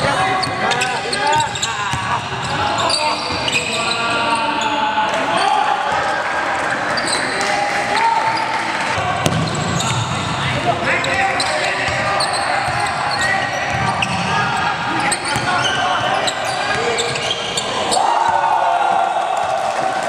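Live sound of a basketball game on a hardwood gym court: a basketball bouncing, with indistinct shouts and calls from players and bench echoing in the hall.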